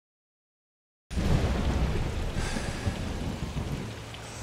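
Silence, then about a second in heavy rain and a deep rumble of thunder start together, loudest at the start and slowly easing.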